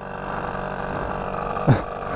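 Small engine of a mini children's motorbike revving up as the rider pulls away, getting louder, with the front wheel lifting. It is loud.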